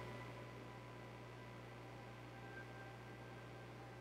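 Quiet room tone: a steady low hum and faint hiss, with nothing else happening.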